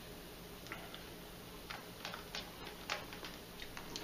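Faint, scattered light clicks and taps as a pH meter's probe is lifted out of one container of calibration solution and set into another.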